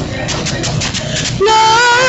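Gospel worship music: a short lull with a few sharp hits, then about one and a half seconds in a woman's voice comes in on a long, wavering sung note.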